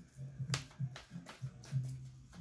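A deck of tarot cards shuffled by hand, giving several sharp, irregular snaps as the cards slap together.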